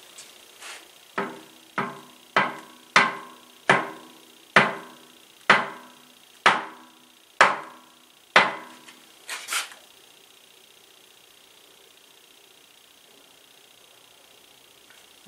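A series of about ten hammer knocks on the flywheel and crankshaft of a 1920 International Type M engine, at first about one every half second and then slowing to about one a second, each one ringing briefly as metal. The knocks drive the loosened flywheel and crankshaft endwise, with the gib keys removed, to show the crankshaft end play. They end with a couple of light taps.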